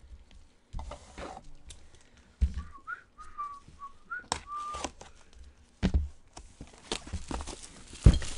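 A person whistling a short run of notes in the middle of the stretch, over scattered clicks and knocks from cards being handled on a table.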